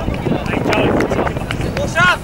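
Wind buffeting the microphone, with short distant shouts from people on the soccer pitch.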